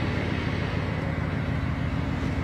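Steady low rumble inside a car, engine and road noise picked up by a phone's microphone.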